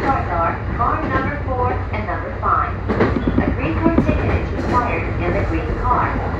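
E235-1000 series electric train running, a steady low rumble heard from inside the train, under an automated English onboard announcement from the train's speakers.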